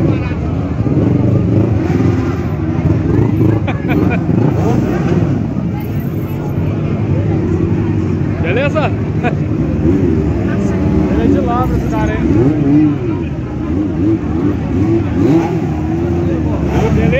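Several motorcycle engines running as a line of bikes rides slowly past, with throttles revved now and then; crowd voices mixed in.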